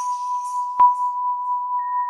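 A steady, pure electronic tone held throughout, with a single sharp click a little under a second in and a second, higher tone joining just before the end.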